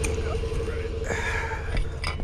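Steady low hum of an idling pickup truck engine, with a few faint clicks as a metal ceiling fan is handled near the end.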